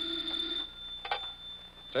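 Telephone bell ringing steadily, as a radio-drama sound effect, stopping a little over half a second in. A short click follows about a second in.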